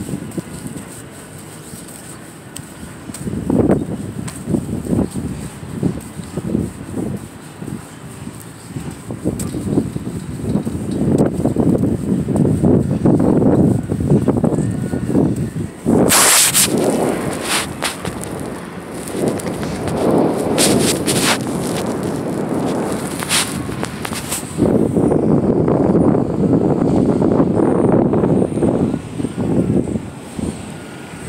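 Wind and jacket fabric rubbing against a handheld phone's microphone, a fluctuating rumble, with a few sharp knocks from the phone being handled about halfway through and a denser, steadier rumble near the end.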